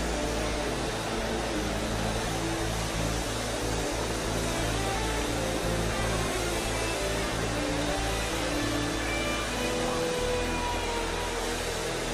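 Slow background music of long held chords that change every second or so, over a steady hiss.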